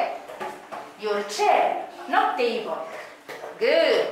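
Speech only: high-pitched voices talking in short phrases.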